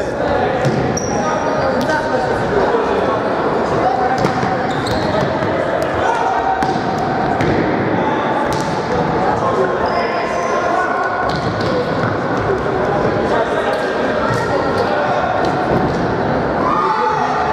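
Futsal ball being kicked and bouncing on a wooden gym floor, sharp knocks again and again, under a steady din of shouting voices that echo in a large sports hall.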